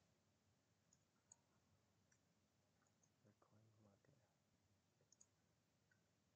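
Near silence with a few faint computer mouse clicks, one of them confirming a dialog.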